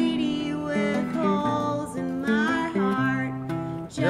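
Acoustic guitar playing an instrumental passage of changing chords.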